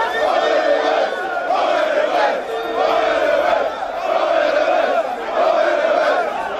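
Large crowd shouting and chanting, the voices swelling in regular waves under a second apart. Two short held notes sound over it, near the start and around the middle.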